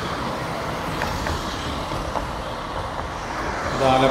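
Road traffic going by: cars and a motor scooter passing on a two-lane road, giving a steady engine and tyre noise.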